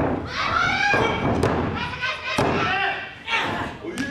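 Several dull thuds of bodies hitting the wrestling ring's canvas during a submission hold, over high-pitched yells and cries.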